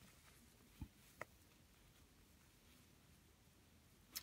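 Near silence: room tone, with two faint, brief ticks a little under and a little over a second in.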